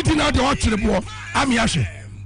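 Rapid, animated talk over background music, with a steady low hum underneath.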